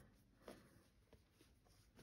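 Near silence: room tone, with faint soft rustles of cloth scraps being handled, about half a second in and again just after a second.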